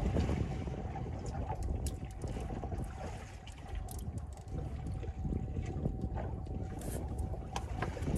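Wind buffeting the microphone on a small boat at sea, with a faint steady tone and scattered small clicks and knocks.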